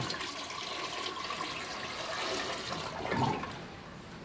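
Water poured from a plastic bucket into a toilet bowl, hand-flushing the toilet where there is no running water: a steady gushing pour that tails off about three and a half seconds in.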